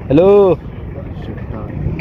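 A man's voice calling a single drawn-out "hello", rising then falling in pitch, followed by a steady low background rumble.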